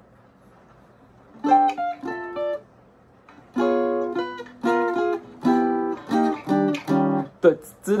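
Archtop jazz guitar played as an example: a few short plucked notes about a second and a half in, then after a pause a run of about a dozen short chords.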